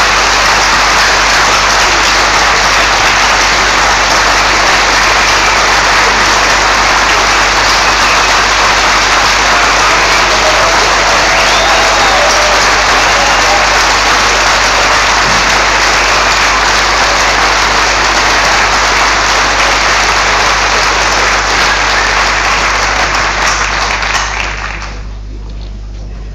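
A large audience applauding steadily and loudly, the clapping dying away near the end.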